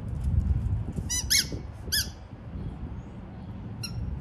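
Rubber squeaky dog toy being squeezed by hand, giving a few short high squeaks: two close together about a second in, another at two seconds and a faint one near the end.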